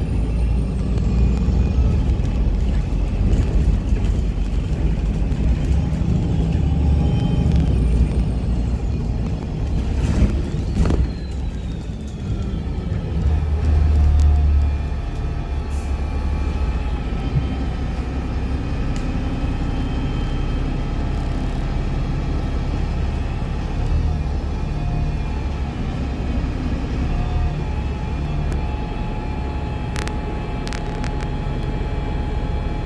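Street traffic: bus engines running and passing close by, a steady low rumble that swells loudest about halfway through, with a few faint clicks and thin whines.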